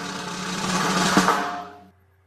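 A short musical sting built on a drum roll, cueing the weather segment; it fades out shortly before the end.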